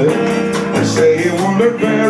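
A live small band playing, with a male singer scatting "do do" at the start over electric bass and drums with a steady cymbal beat.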